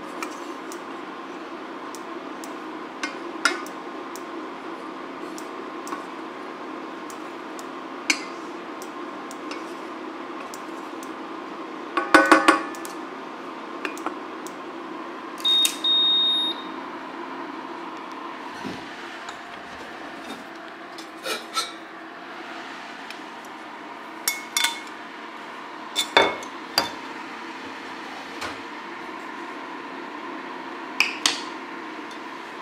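An induction hob hums steadily under a steel saucepan of barley cooking in water. Scattered light clinks and knocks of pot and utensils punctuate the hum, with a louder ringing clatter about twelve seconds in. A single electronic beep lasting about a second comes about halfway through.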